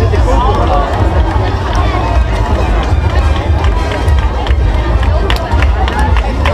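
Crowd of spectators chattering and calling out close by, over a heavy, steady low rumble of wind on the microphone, with a few sharp hand claps near the end.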